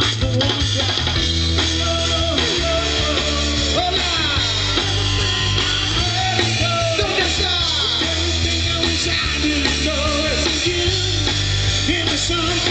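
Live rock band playing through a PA: drum kit, bass and guitars in a steady full groove, with a wavering melody line riding over the top.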